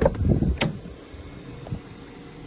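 Front door of a 2002 BMW 535i being opened by hand: a click from the handle and latch, some knocks and handling, and a second sharp click a little over half a second in.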